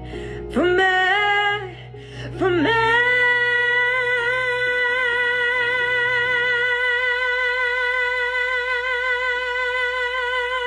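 A woman singing solo over a soft backing track. A short phrase, then a sweep up into one long held note with vibrato from about three seconds in. The backing drops away about seven seconds in, leaving the held note on its own.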